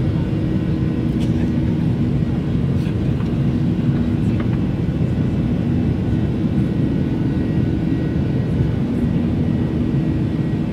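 Jet airliner cabin noise: a steady rumble of engines and airflow with a low, even hum underneath.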